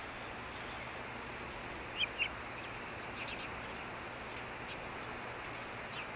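Osprey calling with short, high chirps: two loud ones about two seconds in, then a quick run of fainter chirps a second later, over a steady background hiss.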